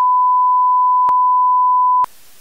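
Television colour-bars test tone: one loud, steady, pure high beep held throughout, broken by a single short click about a second in.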